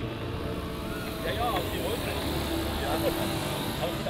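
People talking over a steady high hiss, typical of a small jet turbine running.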